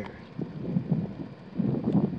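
Wind buffeting the microphone in irregular gusts, strongest near the end.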